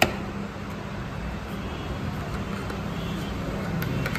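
A single sharp click at the very start, then a steady low rumble and hum of background noise, like distant road traffic, with a few faint ticks near the end.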